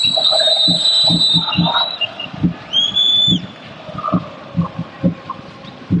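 Football stadium crowd with a fan drum beating about two to three times a second. Two long, shrill whistles sound over it: one runs to about two seconds in, and a shorter one comes at about three seconds.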